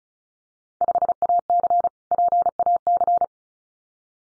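Morse code sent as a single steady pure tone at 35 words per minute, keyed in quick dits and dahs for about two and a half seconds: the second sending of the Field Day exchange just spoken, "Five A C, Pacific".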